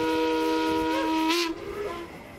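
Paddle steamer's steam whistle blowing one long blast, a chord of several steady tones that bends slightly upward near the end and stops about one and a half seconds in.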